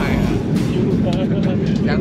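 Loud low rumble of an airliner cabin while the plane shakes, with voices over it.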